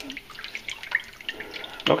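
A hand stirring raw peeled shrimp in a container of water: small irregular splashes and drips.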